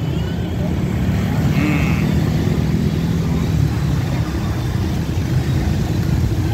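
Steady low rumble of motorbike and scooter traffic passing along a busy street.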